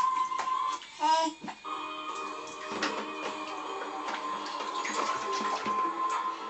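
Music playing from a duck-shaped bath-toy radio, with a held tone throughout and a short run of quick notes about a second in.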